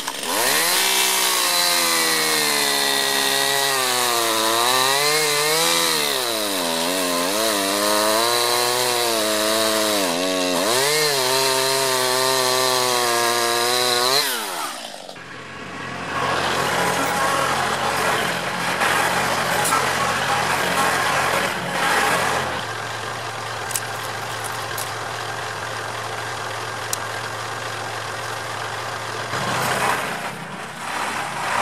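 Chainsaw cutting a stump at ground level, its engine pitch rising and falling in the cut, then winding down and stopping about halfway through. After that, a compact tractor's engine runs steadily.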